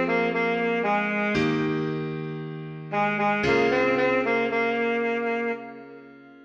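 Alto saxophone melody line from sheet-music playback, held notes with a few changes: one about a second in, another soon after, and two more around the middle, over a sustained backing. Near the end the notes die away into a rest.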